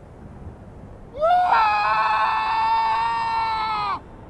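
A long, loud, high-pitched cry from a person's voice, sliding upward about a second in and then held on one steady pitch for over two seconds before cutting off abruptly near the end.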